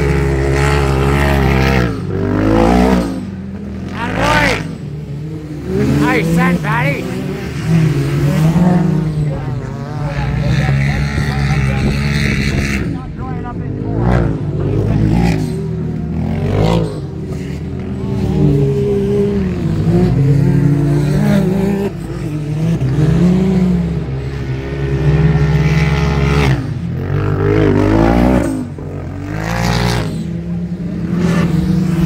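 Engines of several 1000cc side-by-side UTVs racing on a dirt track, revving hard and easing off as they pass, so the pitch keeps rising and falling.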